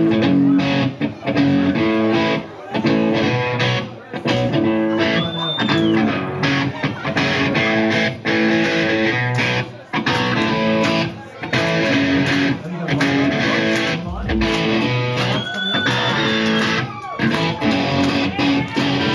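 Live rock band playing a loose, impromptu jam: electric guitar and bass chords over rhythmic hits, loud and steady. A high sliding note sounds briefly twice, about five and fifteen seconds in.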